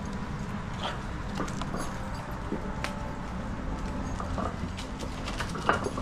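Dogs chewing raw whole sardines, bones and all: scattered small crunching clicks and a louder snap near the end, over a steady low rumble.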